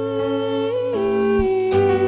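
Live band music, an instrumental passage: electric keyboard chords under a held melody note that slides down in pitch about a second in and then holds.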